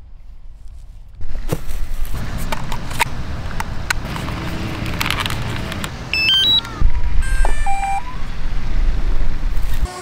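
Clicks and handling noises from a DJI remote controller and its hard case being handled. About six seconds in comes a short run of rising electronic beeps and a few further tones, typical of a DJI Mavic Mini drone and its controller powering on.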